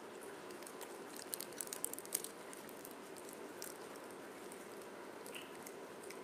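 Steady room noise with a brief run of small clicks and crinkles about a second in, like plastic or fabric being handled.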